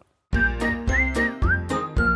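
Short, cheerful music jingle starting about a third of a second in: a high, thin melody line that slides between notes over a run of bright, plucked-sounding notes.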